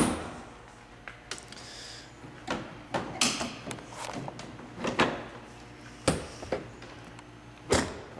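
A heavy thump of a door or panel on a 1927 Rolls-Royce Phantom I being shut, followed by a scattering of lighter knocks and clicks as the car's body is handled.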